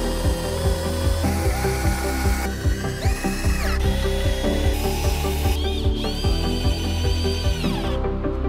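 Cordless drill-driver driving screws into a wooden frame, its motor whine rising as the trigger is squeezed, holding, then dropping when released, several times, the longest run near the end. Background electronic music with a steady beat plays under it.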